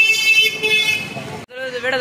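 A vehicle horn holding one long steady high note, which fades out about a second in. Speech follows after a brief sudden gap.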